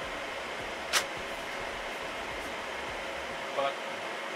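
Steady rushing of server and cooling fans running in a rack room. A single sharp click about a second in, as a plastic cover is set into place inside the open server.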